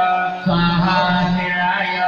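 Hindu puja mantras chanted in a repetitive, melodic line, with music behind the voice.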